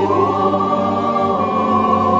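Slow devotional choral music: voices sustain long, held notes in a chord, stepping up in pitch just after the start and then holding steady.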